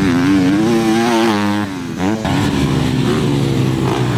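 Motocross dirt bike engine revving on the track, its pitch rising and falling as the rider works the throttle. The level dips briefly just before two seconds in, and the engine then runs on at a lower pitch.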